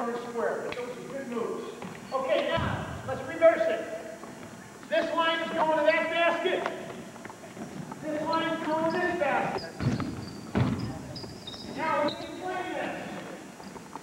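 Basketballs bouncing on a hardwood gym floor during a dribbling drill, with people talking over it throughout; a few sharper bounces stand out.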